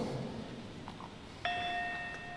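Gamelan saron, a metal-keyed metallophone, struck once with its mallet about one and a half seconds in: a single clear metallic note that rings on.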